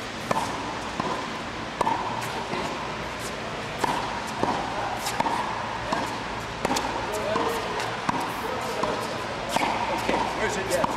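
Tennis balls hit on the volley, each a sharp pop of ball on racket strings with a short ring, about eight irregular shots over ten seconds as a net volley drill runs.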